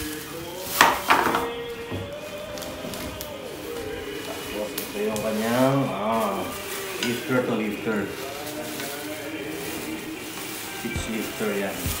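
Plastic packaging rustling and crinkling as wrapped gaming-chair parts are handled and lifted out of a cardboard box. There are sharp knocks and clicks about a second in.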